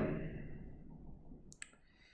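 A single sharp computer mouse click about one and a half seconds in, against near silence.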